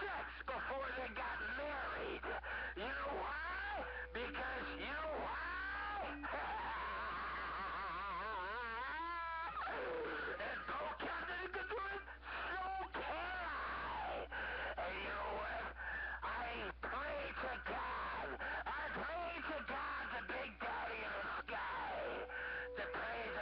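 A strong transmission on a CB radio receiver: a voice making sliding, yowling noises rather than words, with a fast-warbling tone about nine seconds in. A steady hum and a few steady whistle tones run under it.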